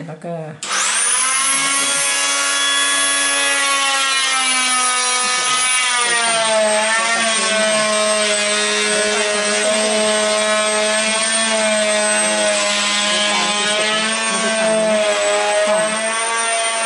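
Electric power saw starting abruptly just under a second in and running continuously with a steady, high motor whine while cutting wood, its pitch dipping slightly about six seconds in.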